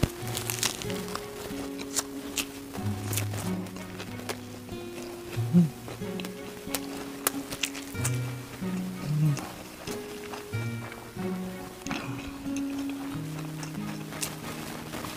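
Background music, a melody of held low notes, plays throughout. Over it come sharp crunches and mouth clicks from chewing crispy fried battered squid, most frequent in the first few seconds.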